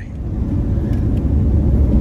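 Low, steady road and engine rumble heard from inside a moving truck's cab, growing louder over the first half second and then holding.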